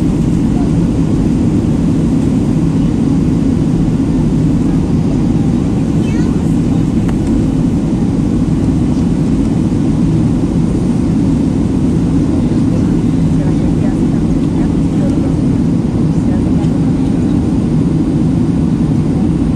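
Steady, loud cabin noise of a Boeing 737 jet airliner in flight, heard from a window seat: a constant low rumble of engines and airflow that stays even throughout.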